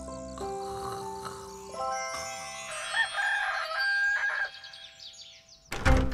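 Soft music with held notes, then a rooster crowing amid bird chirps, a cartoon cue for morning. A sudden loud sound comes just before the end.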